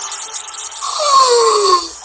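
Soundtrack of a fan-made film trailer playing back: a noisy sound-effect bed fading away, then a pitched tone gliding downward for about a second in the second half.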